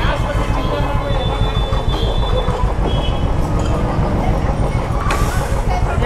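A motorcycle engine idles at low revs, heard from the rider's seat as a steady, dense low rumble with a fine pulsing beat.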